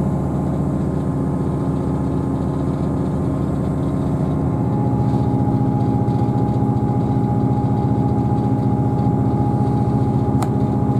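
Underfloor diesel engine and running noise of a Class 158 diesel multiple unit, heard inside the passenger saloon as the train runs along. The hum is steady, and about halfway through the engine note changes and grows a little louder.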